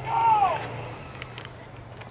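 A man's brief wordless voiced sound, rising then falling in pitch, about half a second long at the start, followed by a low steady hum.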